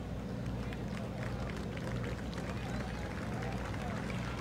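Indistinct background voices over a steady low hum, with a few faint clicks.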